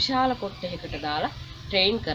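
A boy's voice speaking Sinhala, with a steady low hum underneath.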